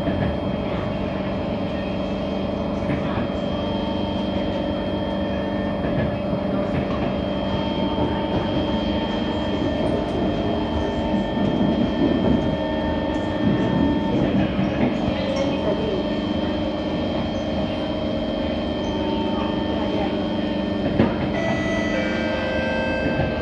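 Singapore MRT train heard from inside the carriage while running at speed on the elevated track: a steady rumble of wheels on rail, with the whine of the drive held at several steady pitches. It grows a little louder about halfway through.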